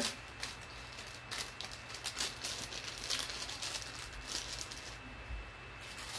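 Scattered light clicks, rattles and rustles of beaded jewelry being handled, over a faint steady background hum.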